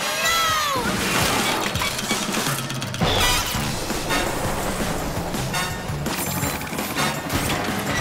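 Cartoon action soundtrack: chase music mixed with sound effects, a pitched sliding call at the start, then a louder, busier stretch of crashes and rumble from about three seconds in.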